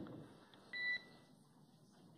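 A single short electronic beep on the mission radio loop: one steady high tone, about a quarter of a second long, a little before the middle, over faint hiss.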